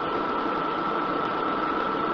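Steady cabin noise of a city bus with its engine running, heard from inside the bus, with a thin steady high tone above the hum.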